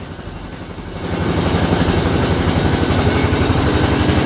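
A boat's engine running with a fast, steady pulse, growing louder about a second in as the boat gets under way across open water.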